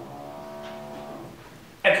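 A man's voice holding one long, steady hesitation vowel ("uhh") for about a second and a half, then speech resumes near the end.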